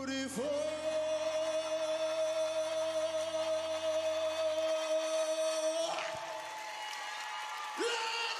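A male singer holding one long, steady high note into a microphone over sustained backing music, from about half a second in until it cuts off about six seconds in. A new sung phrase starts just before the end.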